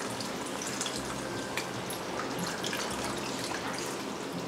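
Tamarind water poured in a thin steady stream into a steel pot of okra tamarind curry (vendakkai puli kuzhambu) that is bubbling on the stove.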